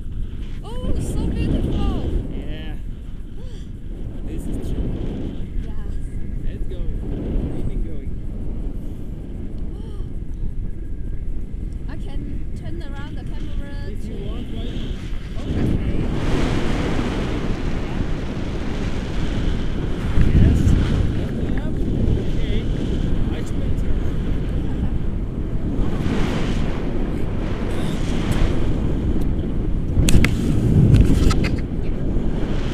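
Wind of flight buffeting the microphone of a camera held out on a pole during a tandem paraglider flight, a steady low rush. It grows louder about halfway through, with stronger gusts after that.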